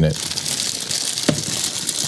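Clear plastic packaging bag crinkling as it is handled, a steady crackly rustle.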